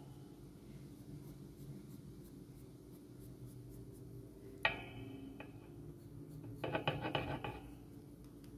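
Tombow Mono Zero pen eraser rubbing lightly over graphite-shaded paper, lifting only a little graphite. It is faint, with a short squeak a little past halfway and a run of short squeaks near the end.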